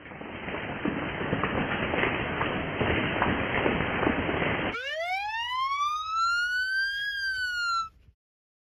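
A steady rushing noise for the first few seconds, then a fire engine siren wailing: one long rise in pitch that peaks and starts to fall before it cuts off near the end.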